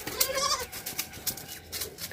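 A goat bleating once: a short, quavering bleat about half a second long, just after the start.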